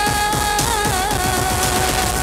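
A pop song with a female voice holding one long sung note, which wavers briefly about halfway through, over a backing track with a steady drum beat.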